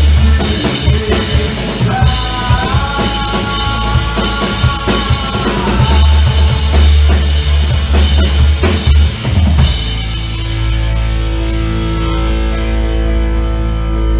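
Rock band playing loud live: drum kit with bass drum and snare under electric guitars and bass, with a sustained lead guitar line. About ten seconds in, the drums stop and the guitars and bass ring on in held notes.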